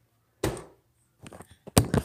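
A few knocks from things being handled while making cereal: one sharp thud about half a second in, a few lighter taps, then a louder knock near the end.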